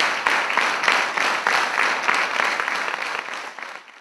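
Theatre audience applauding at a curtain call: dense, steady clapping that fades out near the end.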